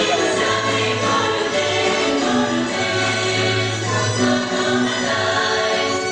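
Bulgarian folk music with a choir of voices singing in held, sustained tones.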